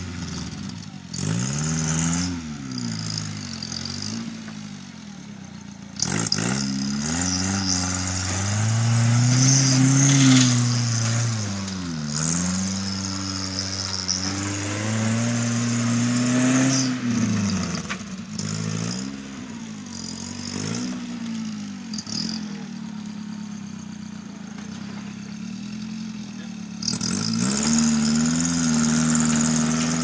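Tube-chassis rock crawler's engine revving up and down over and over as it climbs over boulders and tree roots under load, its pitch rising and falling every second or two.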